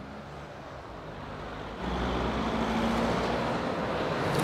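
Faint street traffic, then about two seconds in a louder, steady low hum of a single-decker bus's engine running.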